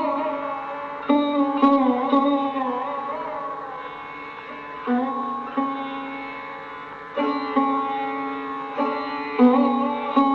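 Sarod playing slow, unmetered phrases in Raag Yaman Kalyan: single plucked notes at irregular intervals, each ringing on and sliding in pitch into the next, in the manner of an alap, with no tabla heard.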